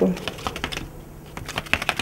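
A 1971 tumbling toy: a small weighted figure flipping end over end down a tilted cardboard track, clicking at each flip. The clicks come in two quick runs.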